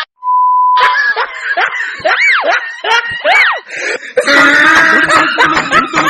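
Edited-in comedy sound effects: a short steady beep of about a second, then two sounds that swoop up in pitch and back down, followed from about four seconds in by busy music mixed with laughter.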